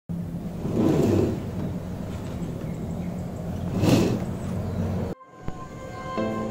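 A steady low mechanical rumble with a low hum, swelling louder twice, that cuts off suddenly a little after five seconds in. Soft plucked-string background music starts near the end.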